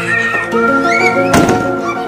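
Background music with steady held notes. About one and a half seconds in comes a single thunk as the SUV's side-hinged rear door is swung shut.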